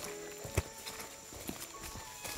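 Footsteps of hiking boots on a leaf-littered forest trail: a few separate footfalls, the heaviest about half a second in and another about a second later, under background music with held notes.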